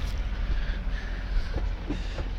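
A vehicle engine running with a low steady rumble.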